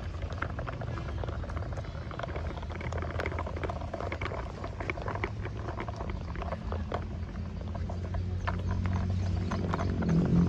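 Plastic toy tractor wheels rolling over dirt, grit and dry leaves, giving a run of irregular crackles and clicks over a steady low rumble.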